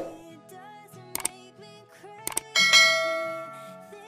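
Background music with the sound effects of a subscribe-button animation: a short click about a second in and another just past two seconds, then a bright bell-like ding that rings out and fades over about a second.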